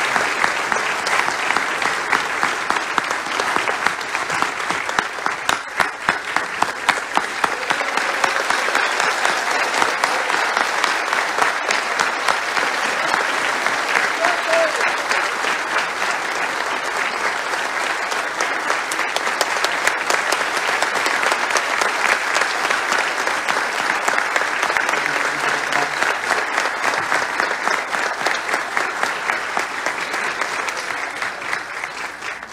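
Large audience applauding steadily, many hands clapping together in a long, unbroken ovation.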